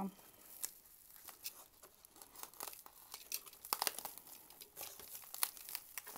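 Bubble wrap and a foil-lined insulating wrap crinkling as a parcel is cut and pulled open by hand, with irregular small crackles and snaps.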